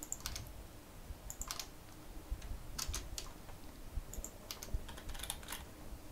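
Computer keyboard keys pressed in short, scattered clusters of a few clicks each, faint.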